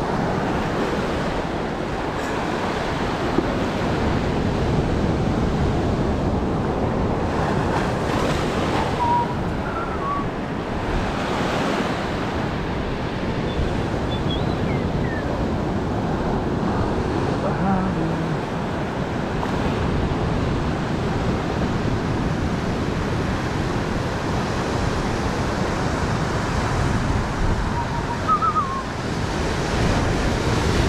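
Ocean surf breaking and washing up the beach: a steady rush of water noise.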